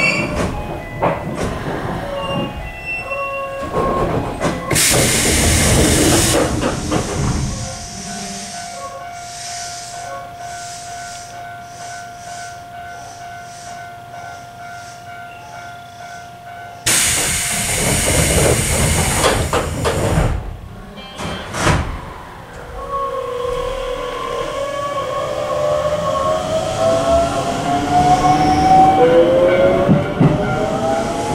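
Keisei 3700 series train heard from inside the car. Its traction motors whine down in falling tones as it brakes to a stop, and a loud air hiss follows a few seconds in. During the quiet stop a steady tone holds; a second loud air hiss comes about 17 s in, then the motors whine up in rising tones as the train pulls away.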